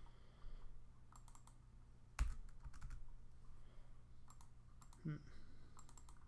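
Faint, scattered clicking at a computer, in small clusters of quick clicks, with one sharper click about two seconds in. The clicks are repeated attempts to pick emojis that are not going into the editor. A faint steady low hum runs underneath.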